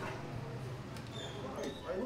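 Quiet indoor room ambience: a low steady hum with a few faint small ticks and brief high squeaks.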